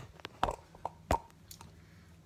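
Several light clicks and knocks in the first second and a half as the phone camera is handled and moved, then quiet room tone.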